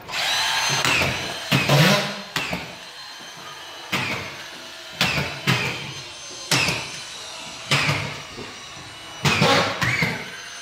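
Cordless drywall screw gun driving screws through a plasterboard ceiling sheet into the framing. There are about nine short bursts of the motor, each starting suddenly and dying away as it spins down.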